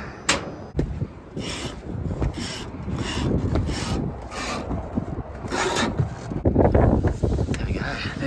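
Rhythmic rasping scuffs, about one every 0.7 s, of boots climbing a corrugated steel roof, with rough handling rumble underneath.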